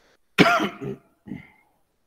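A man clearing his throat: one harsh, cough-like rasp lasting under a second, then a shorter, fainter second one.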